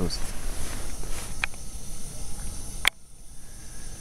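Steady rushing hiss of a gas camping stove burner heating a kettle. A single sharp click comes near three seconds in, after which the noise is much quieter.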